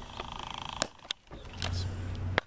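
A brief buzzing sound, then a sharp pop of a softball landing in a fielder's glove about a second in, followed by a couple of lighter knocks.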